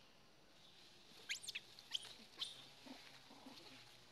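Faint, high-pitched squeaks from young macaques: a quick run of short squeals that rise sharply in pitch, starting a little over a second in, then a couple more single squeaks over the next second.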